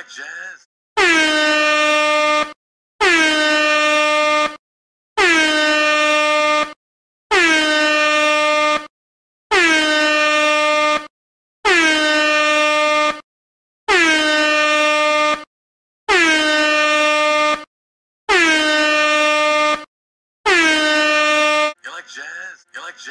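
Ten long blasts of the meme air-horn sound effect, evenly spaced about two seconds apart. Each lasts about a second and a half and dips slightly in pitch as it starts.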